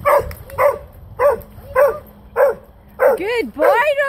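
A dog barking over and over, one short bark about every half second, then a quicker run of whining yelps that slide up and down in pitch in the last second. It is the kind of barking one of these dogs does when its walker stands still too long.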